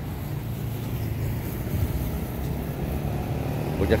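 Motor vehicle on the street, its engine a steady low hum.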